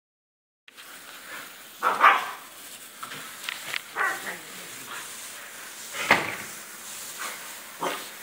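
A dog yelping and barking in short bursts, several times, the loudest about two seconds in, over the steady hiss of a garden hose spraying water against a pallet. The yelps are the dog's reaction to the sound of the water splashing.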